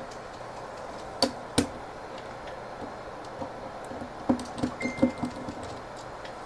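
A 1.5 mm hex driver backing a small self-tapping screw out of a plastic printer base: two sharp clicks about a second in, then a run of small clicks and taps near the end with a brief thin squeak.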